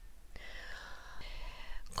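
A woman narrator drawing a long breath in through the mouth, a soft hiss lasting about a second and a half, with a low steady hum underneath.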